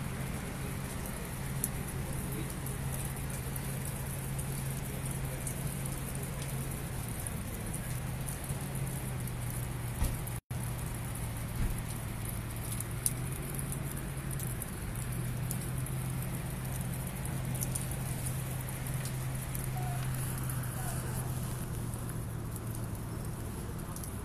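Sleet, snow mixed with rain, falling steadily and pattering on cars and the ground, with scattered sharp ticks of icy drops. A low steady hum runs underneath, and the sound cuts out for an instant about ten seconds in.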